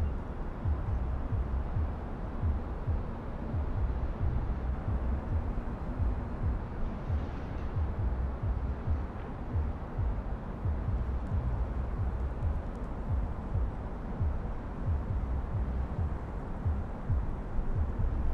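Steady low rumble of outdoor background noise, heaviest in the bass with uneven low surges and no speech or music.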